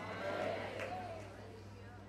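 A faint, wavering voice in the hall that fades away over the first second or so, over a steady low electrical hum.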